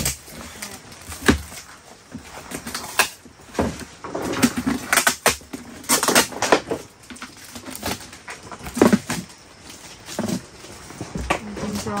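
Plastic wrapping film being pulled and crinkled off a stack of red plastic basins, with irregular rustling and a few sharp knocks as the basins are handled and pulled apart.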